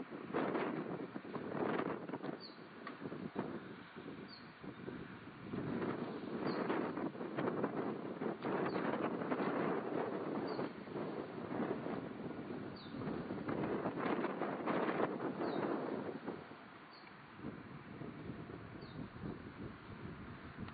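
Wind buffeting the microphone outdoors, in uneven gusts that ease off for a couple of seconds near the end. A faint short high chirp repeats about every two seconds.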